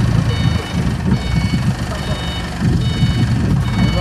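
Hangzhou A30 forklift's warning beeper sounding a repeated electronic beep, about once a second, over the low running of its engine as it manoeuvres.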